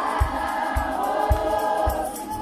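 A large church congregation singing a hymn together in many voices, over a low steady beat a little under twice a second.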